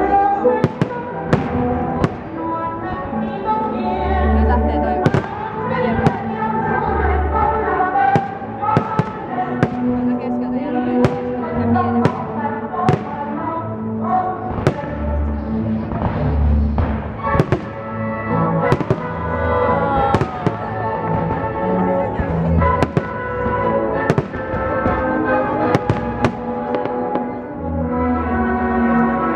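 Aerial firework shells bursting in a rapid, irregular series of sharp bangs over loud music played to accompany a pyromusical display.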